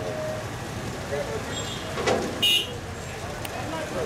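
Ferry-loading din: crowd chatter and vehicle engines running, with a knock about two seconds in and, about half a second later, a short, shrill high-pitched sound that is the loudest thing heard.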